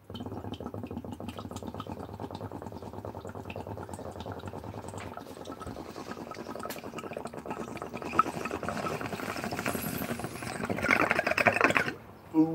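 Water in a glass bong bubbling steadily as smoke is drawn through it on a long inhale. The bubbling gets louder and brighter over the last second or so as the pull finishes, then stops suddenly.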